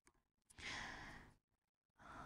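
A soft breath drawn close to a handheld microphone, lasting about three quarters of a second and starting about half a second in. The rest is near silence.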